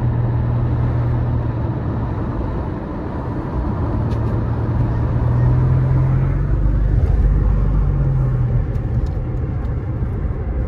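Car driving, heard from inside the cabin: a steady low engine hum under road and tyre noise. About halfway through the hum grows louder and a little higher, then eases back near the end.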